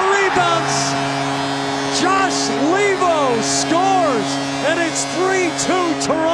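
Arena goal horn after a home goal: a loud, steady, multi-toned blast that starts about half a second in and holds for about six seconds, over the cheering crowd.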